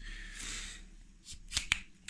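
The telescoping extension pole of a Ulanzi smartphone tripod is pushed shut by hand. A short sliding rasp is followed by a few sharp clicks as the sections seat.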